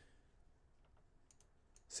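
Near silence: room tone, with a few faint, sharp computer clicks in the second half.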